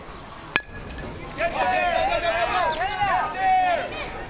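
A baseball bat hits a pitched ball with one sharp crack about half a second in. Spectators then shout and cheer, loudly and in overlapping voices, for about two and a half seconds.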